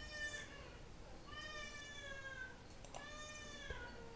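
Three faint, high-pitched, drawn-out cries in the background. The middle one is the longest and falls slightly in pitch.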